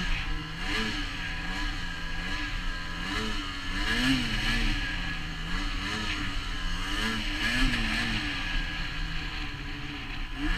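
Ski-Doo Summit 600 E-TEC two-stroke snowmobile engine, with an aftermarket clutch kit and an MBRP trail can exhaust, running under load in deep powder. Its revs rise and fall again and again as the throttle is worked, over a steady rush of noise.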